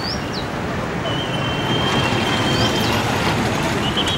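Steady road traffic noise. A thin, high, steady tone runs through the middle for about two seconds, and two short, high falling chirps come near the start and near the end.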